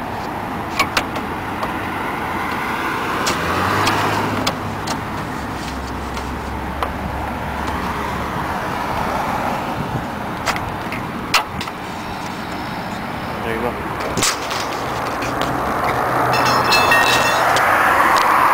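Road traffic going by, its noise swelling twice, around four seconds in and near the end, with a low engine hum early on. Scattered light clicks and taps of a hand tool on the headlight mounting bolts.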